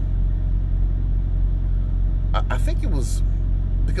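Steady low rumble inside a car cabin, with a few murmured words about two and a half seconds in.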